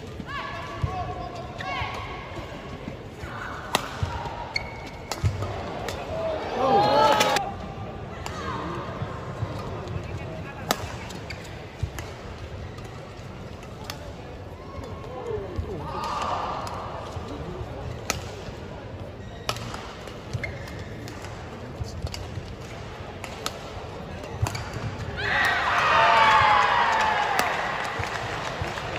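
Badminton rally in an arena: sharp strikes of rackets on the shuttlecock, with shoe squeaks on the court floor. Crowd voices swell twice, about seven seconds in and again near the end.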